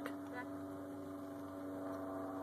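A steady, constant-pitch mechanical hum, low in level.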